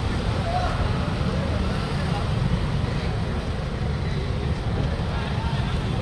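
A Mercedes-Benz V-Class van moving off close by, with crowd voices over a steady low rumble.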